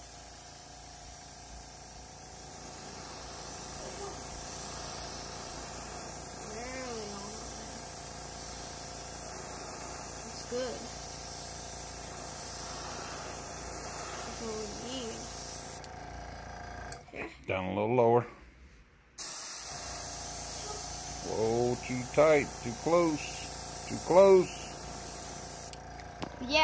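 Airbrush spraying paint through mesh netting onto a wooden lure to lay a scale pattern: a steady hiss that stops for about three seconds past the middle, then starts again.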